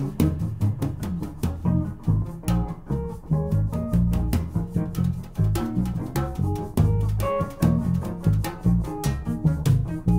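Jazz band playing a repeating odd-meter ostinato groove: a Fender Precision electric bass carries a busy line in the low end, with electric guitar notes and sharp percussion hits over it.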